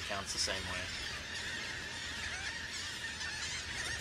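Dense chorus of many terns calling at a nesting colony, a continuous overlapping wash of short shrill calls at moderate-low level. Faint voices talk briefly near the start.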